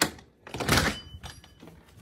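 A sharp knock right at the start, then a heavier, longer thud with a rustle about half a second in.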